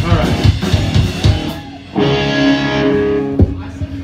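Live rock band playing a short loud burst of electric guitar and drum hits, then a single electric guitar chord ringing out for about a second and a half before a final hit cuts it off.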